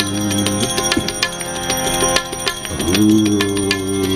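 Instrumental passage of a Gujarati bhajan: harmonium chords held with small hand cymbals struck in a steady, ringing rhythm. The harmonium drops out about half a second in and comes back about three seconds in, while the cymbal strikes keep going.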